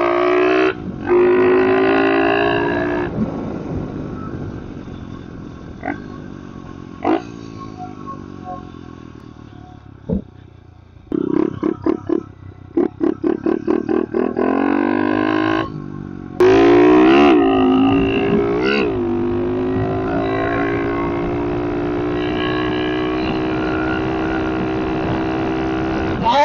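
110cc four-stroke pit bike engine heard through a helmet mic. The revs fall away for several seconds as the bike coasts, then come in choppy on-off bursts, and about two-thirds of the way in the engine is opened up sharply and holds a fairly steady pull to the end.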